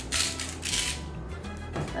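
Hand salt grinder being twisted, a gritty grinding for about the first second that then fades, over soft background music.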